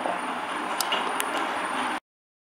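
Steady background noise of rumble and hiss, with two faint clicks about a second in.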